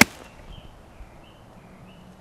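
A golf club swung through and striking a ball off the fairway turf: a short swish rising into a single sharp crack right at the start, the loudest thing here.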